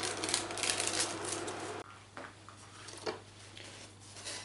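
Pizza dough sizzling as it browns in a frying pan, a steady hiss that cuts off abruptly about two seconds in, followed by a few faint light knocks of utensils or cookware.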